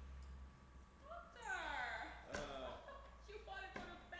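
A person's wordless vocal sound, drawn out and falling in pitch about a second in, followed by shorter vocal sounds. There is a sharp knock just past the middle and another near the end.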